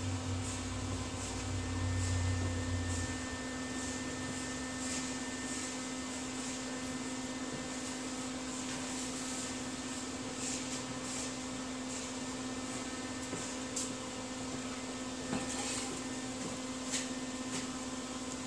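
Steady electrical or mechanical hum of a running machine, with a lower rumble that stops about three seconds in and a few faint clicks and knocks near the end.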